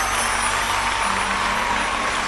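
Studio audience applauding steadily, a dense even clapping with faint sustained music notes underneath.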